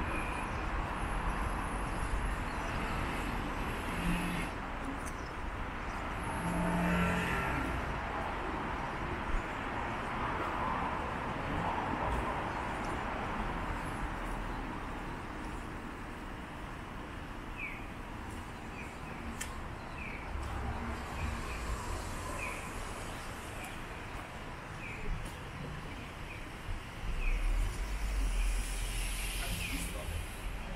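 Shallow stream water rushing steadily over a rocky bed, with a run of short high chirps in the second half and a low rumble near the end.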